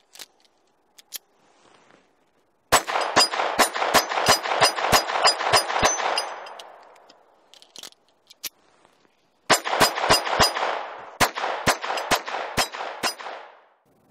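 Ruger LCP II .22 LR pocket pistol fired in two quick strings of about a dozen and about ten shots, three to four shots a second, each string trailing off in an echo. A few small clicks of handling come before the first string.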